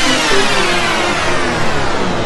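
Electronic dance music in a DJ mix, with a long whooshing noise sweep falling steadily in pitch over short synth notes.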